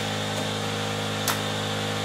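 A steady low mechanical hum with one light click a little over a second in.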